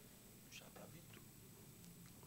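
Near silence: faint room tone through the microphone, with a few small faint clicks about half a second to a second in.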